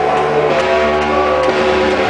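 Loud dance music played by a DJ through large PA speakers: a steady run of held, layered notes that change every half second or so.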